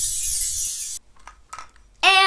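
A bright, high shimmering whoosh, an editing transition sound effect, that cuts off suddenly about a second in. A quieter stretch with a couple of faint clicks follows.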